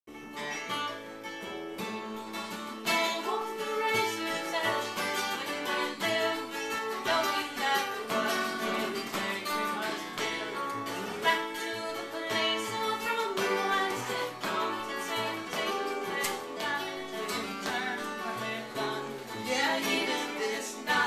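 Live acoustic band: a woman singing over two acoustic guitars and a plucked upright bass.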